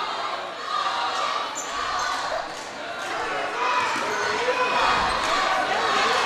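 Gym ambience during a basketball game: a crowd chattering, with a basketball being dribbled on the hardwood court.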